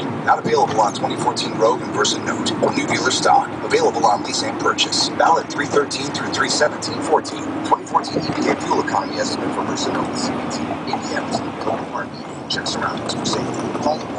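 Steady road and engine drone inside a moving car, with indistinct talking over it.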